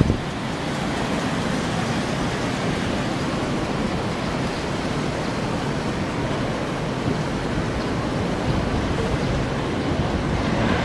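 Steady, even wash of city street traffic noise, with no single vehicle standing out.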